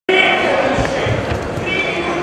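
Voices calling out in a large, echoing sports hall, with a few dull thuds about a second in.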